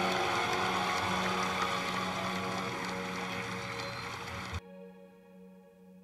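Audience applauding over a sustained background music bed, slowly fading; the applause cuts off suddenly about four and a half seconds in, leaving the faint music, which then fades out.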